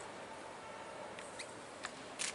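Quiet room tone of a large church nave, a steady faint hiss, with a few faint squeaks and clicks in the second half.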